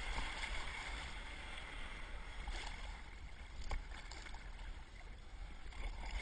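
Sea water rushing and splashing in the churn left by a whale surfacing beside a kayak, with wind rumbling on the microphone.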